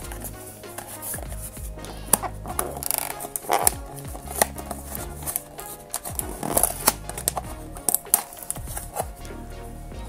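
Background music with a steady beat, over crisp clicks and crackles of a small cardboard blind box being torn open along its perforated tab, then its top flap lifted.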